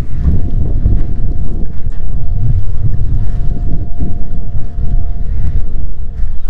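Wind buffeting the microphone: a loud, gusting low rumble. Under it runs a faint, steady high hum.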